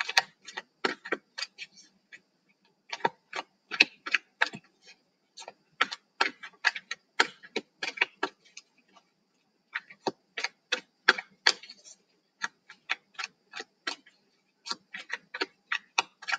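Light taps coming in irregular runs of several a second, with short pauses between runs.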